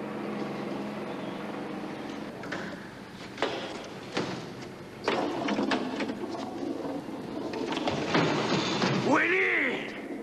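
Pinball machine being worked: sharp mechanical clicks and knocks over a steady hum, and near the end an electronic tone that swoops up and back down.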